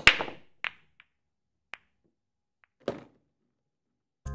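Sound effects for an animated title card: about five sharp hits spread over three seconds, each dying away quickly, the loudest right at the start, with dead silence between them.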